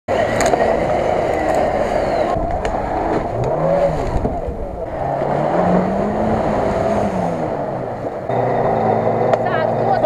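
Off-road 4x4 engines revving hard in deep mud, across several short cuts. The engine pitch rises and falls as they are pushed, and near the end an engine runs steadily.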